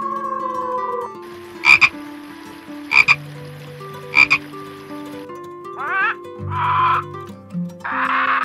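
A frog croaking three times, each croak a quick double pulse, about a second apart over a faint hiss. Before the croaks, a falling howl fades out about a second in. Near the end come three short, harsh bird calls.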